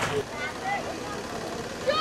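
Faint background voices, then near the end a high-pitched voice begins a long, steady held note.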